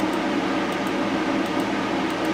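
Steady indoor background noise: an even hiss with a low hum, like a running air conditioner or fan.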